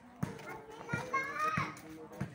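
Children's high-pitched voices calling and chattering in the background, loudest about a second in, with a few short dull knocks.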